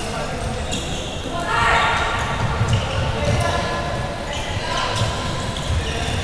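Floorball match in a large, echoing sports hall: shoes squeaking on the court floor, players shouting, with a louder burst of shouts about one and a half seconds in, and scattered dull thuds.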